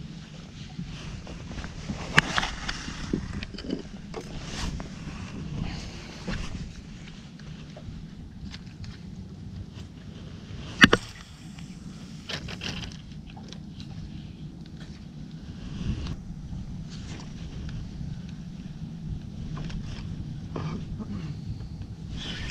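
Steady low wind noise on the microphone out on open water, with a few sharp knocks, the loudest about eleven seconds in.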